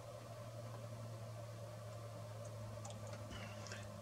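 Quiet bench room tone with a low steady electrical hum, and a few faint light clicks in the last second or so as an oscilloscope probe is handled and hooked onto a breadboard circuit.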